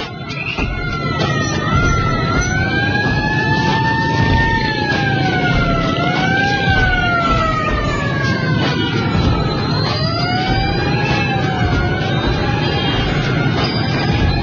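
A wailing siren, its pitch rising and falling slowly and unevenly every few seconds, over a dense rumble of motorbike traffic.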